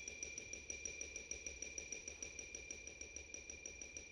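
Contemporary chamber ensemble playing very softly: two thin, high, sustained tones over a fast, even pulsing.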